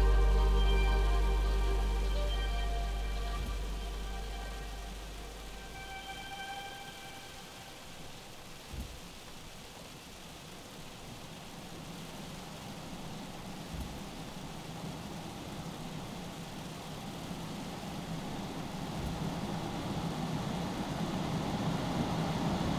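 Soft background music fading out over the first six seconds or so, leaving the steady hiss of a snowstorm falling on a forest, with a few faint low thumps and slowly growing louder toward the end.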